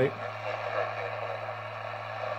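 BC-654 shortwave receiver putting out steady static hiss over a low hum, the weak station fading out.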